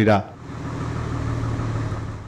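A bus engine idling: a steady low hum.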